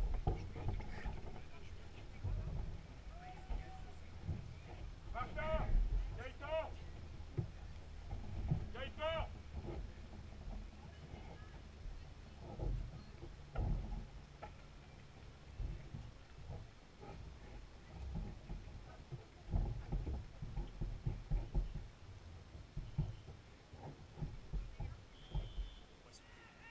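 Distant shouting voices across an open field: a few short calls about five to nine seconds in, over a low rumble with scattered faint knocks.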